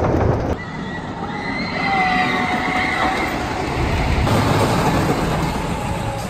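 Timberhawk wooden roller coaster train running on its wooden track: a steady low rumble, with a high drawn-out wavering squeal from about a second in that lasts a couple of seconds.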